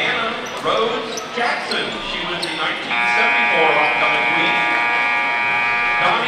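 Gym scoreboard horn sounding one long, steady buzz that starts about halfway through and lasts about three seconds. Before it, a crowd chatters in a large gym and a basketball bounces a few times.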